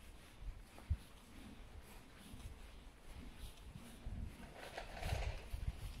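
Quiet footsteps walking on a grass path: irregular soft thuds, with a sharper thump about a second in and a louder stretch of steps near the end.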